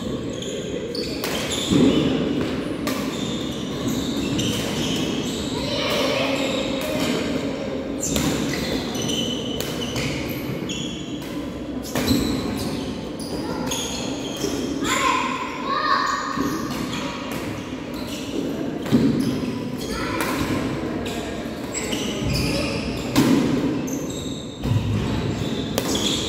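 Badminton rally: rackets striking the shuttlecock in sharp cracks every second or two, with players' feet on the wooden court, echoing in a large hall.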